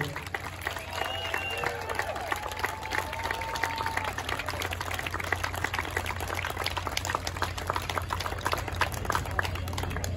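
Audience applauding with scattered claps, with a long pitched call from the crowd between about one and four seconds in.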